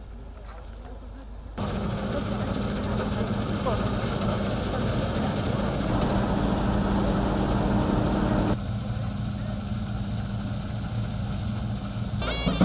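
John Deere combine harvester running steadily while harvesting, its header reel working through the dry crop: a steady engine drone with a low hum. It gets much louder about one and a half seconds in and eases somewhat about eight and a half seconds in.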